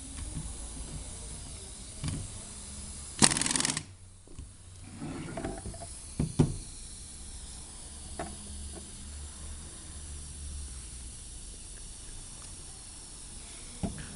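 A pneumatic bottle-capping tool running for about half a second, a short loud hiss of compressed air, as it screws a flip-top cap down onto a plastic bottle. A few light knocks and clicks follow as the capped bottle is handled.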